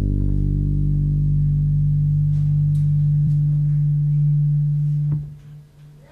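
A single deep instrument note held at a steady level for about five seconds as the final note of a jazz tune, then cut off sharply with a click.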